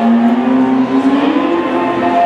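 Live electric blues band playing, with a long held note that slides slowly upward over about a second and a half.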